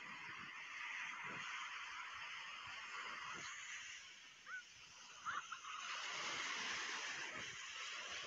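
Steady hiss of surf and wind on a beach, with two brief high rising chirps about halfway through.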